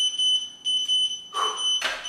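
Electronic interval workout timer beeping with a shrill, high-pitched tone, marking the change between the 45-second work and 15-second rest intervals. A sharp click sounds near the end.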